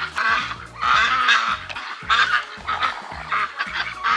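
Domestic ducks quacking repeatedly in a flock, short calls following one another throughout, with music underneath.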